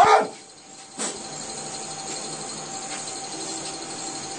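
A single short, loud cry that falls in pitch, followed about a second later by a sharp click.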